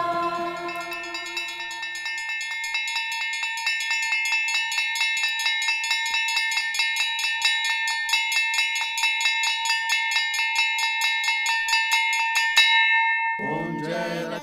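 A brass puja hand bell rung rapidly and evenly, its ring held steady under the strokes, stopping suddenly near the end. A voice then starts singing a prayer.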